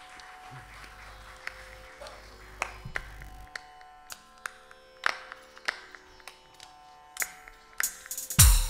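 An electronic percussion pad struck with drumsticks, playing sparse, widely spaced pitched hits that ring briefly over sustained electronic tones. A deep low note sounds from about half a second in until about three and a half seconds in.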